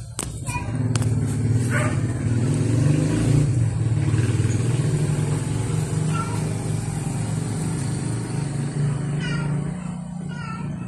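An engine running steadily nearby, a low even hum that sets in about half a second in, with a few short faint high calls over it.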